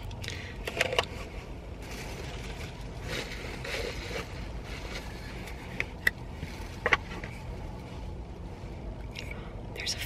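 Hand handling of a camera lens and its plastic caps: soft scrapes and a few small sharp clicks, the clearest about six and seven seconds in, over a low steady rumble.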